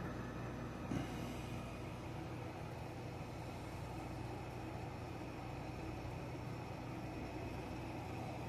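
Steady low hum with a faint hiss, with one faint tap about a second in.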